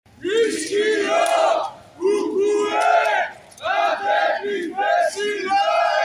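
A crowd of marchers chanting a protest slogan in unison, shouted in three loud rhythmic phrases with short breaks between them.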